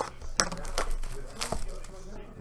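Cardboard card box being picked up and handled on a tabletop: a few sharp taps and knocks, the loudest about half a second in, with a light rustle between them.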